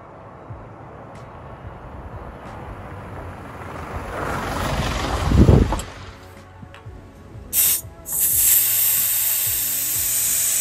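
A 4WD on a dirt road grows louder as it approaches and passes close by about five and a half seconds in, then fades. About eight seconds in, air starts hissing steadily from a tyre valve as the tyre is let down to a lower pressure for off-road driving.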